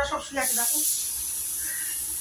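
A few words of speech, then a steady high-pitched hiss starts about half a second in and carries on.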